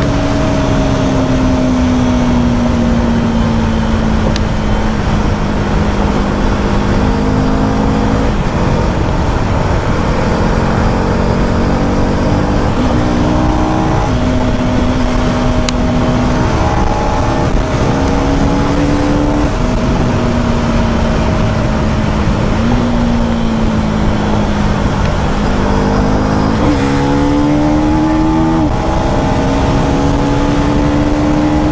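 KTM Duke's single-cylinder engine running under way at rising road speed, its note dipping and climbing several times with throttle and gear changes, over heavy wind rush on the microphone.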